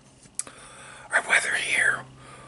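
A man whispering in the second half, after a single sharp click about half a second in.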